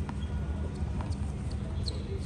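Tennis ball being struck and bouncing in a rally: a few sharp knocks about a second apart over a steady low rumble.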